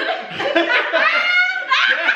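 Several people laughing together, mixed with bits of voice.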